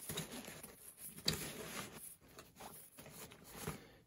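Hand rummaging in a nylon backpack pouch: faint rustling of fabric and gear being handled, with a few small clicks and knocks, the sharpest about a second in.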